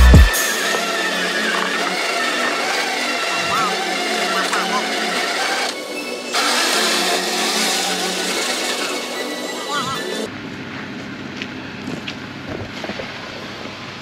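Electric winch pulling under heavy load with a vehicle engine running, as a stuck old Dodge pickup is dragged sideways across a steep slope. A steady mechanical noise that drops to a quieter background about ten seconds in.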